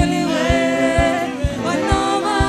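Live gospel praise music: a woman leads the song into a microphone with backing voices, over a band with a drum beat about twice a second.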